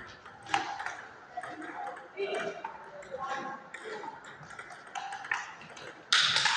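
A table tennis ball clicking back and forth during a rally, struck by the bats and bouncing on the table, in a series of sharp, irregularly spaced ticks. Background voices murmur underneath.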